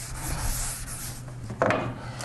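Scratchy rubbing strokes of writing on a board, over a steady low hum. A brief vocal sound comes about one and a half seconds in.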